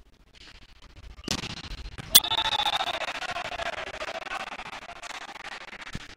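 Volleyball struck hard in an echoing sports hall: one hit about a second in, then a louder, sharp smack of the ball a second later as an attack is put away past the block. Players and spectators then shout and cheer, and the noise slowly dies down.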